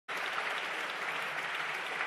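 Applause from many people clapping together in a large parliamentary chamber: a dense, steady patter of hand claps.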